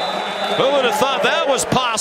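Television broadcast commentary: a man talking over the steady noise of a stadium crowd. A thin, steady high tone sounds for the first half-second or so.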